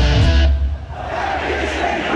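Live concert music played loud over a PA and picked up by a phone in the crowd. The full, bass-heavy mix drops out about half a second in, leaving a thinner, quieter passage without the bass.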